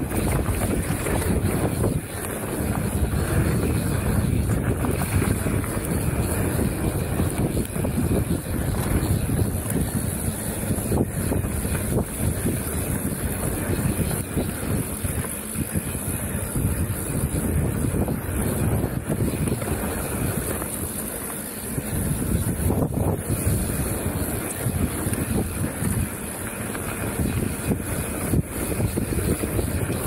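Wind buffeting the microphone and tyres rolling over a packed dirt trail as a mountain bike descends at speed, with the bike knocking and rattling over bumps throughout.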